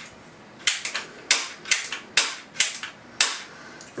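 The action of a 3D-printed Liberator12k 12-gauge shotgun clacking as its charging lever and firing mechanism are worked by hand: about seven sharp clicks, roughly half a second apart.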